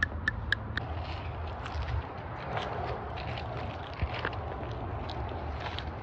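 Quiet outdoor background: a low rumble, faint rustling and a few light clicks in the first second.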